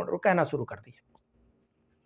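A man speaking Hindi for about the first second, then a pause with only a faint steady hum and a single faint click.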